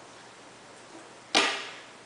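A single sharp plastic click about a second and a half in, fading quickly: the LifeProof quick mount snapping onto the magnetic belt clip.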